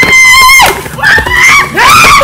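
High-pitched screaming. One long scream is held at a steady pitch and cuts off just over half a second in. More screams follow from about a second in, rising and breaking.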